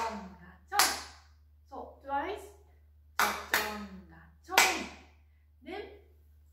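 Sharp hand claps in the rhythm of a bon odori dance: one about a second in, a quick pair a little past three seconds, and another shortly before five seconds.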